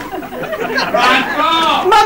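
Loud voices calling out and exclaiming, overlapping, with no clear words.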